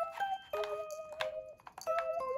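Light, comic background music: a melody of short, bell-like notes that repeat in quick succession.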